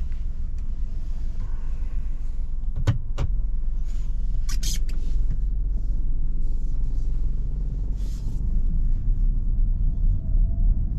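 Cabin sound of a Citroen C5 Aircross with its 1.2-litre inline three-cylinder petrol engine running at low revs as the car creeps along at low speed, a steady low rumble. Two sharp clicks come about three seconds in, and a short high rustle about five seconds in.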